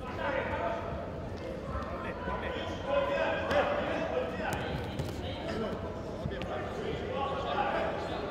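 Voices calling out across a large, echoing sports hall, with a few sharp knocks and thuds of judoka on the tatami.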